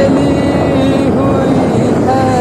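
Motorcycle riding along a road: steady engine noise mixed with wind rushing over the microphone, with a wavering pitched tone held over it.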